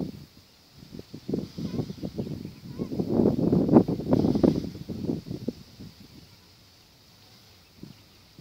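Wind buffeting the microphone: irregular crackling gusts that build over a few seconds, peak in the middle and die away.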